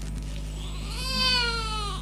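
An infant crying: one long wail that begins just under a second in, its pitch sliding slowly downward, over a steady low hum.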